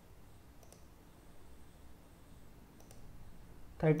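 A few faint computer mouse clicks over a quiet room, in two brief groups about two seconds apart.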